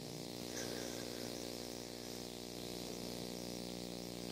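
Steady low electrical hum with a faint hiss, unchanging throughout, the kind of mains buzz carried by a sound system or recording chain.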